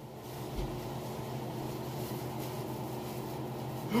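Steady low machine hum with a faint even hiss in a small room, unchanging throughout.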